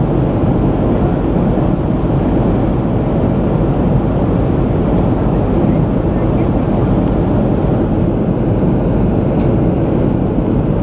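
Steady, loud rumble of a jet airliner's engines and rushing airflow, heard from inside the passenger cabin in flight.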